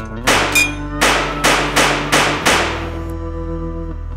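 Six revolver shots, one just after the start and then five in quick succession about a third of a second apart, over a low held musical drone.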